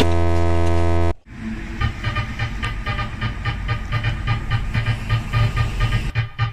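A loud, steady electric buzz for about a second that cuts off abruptly, followed by a hissy, rhythmic pulsing at about four beats a second.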